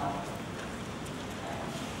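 A pause in an amplified lecture, filled by the steady background noise of a large hall. The last syllable of a man's speech is heard at the very start.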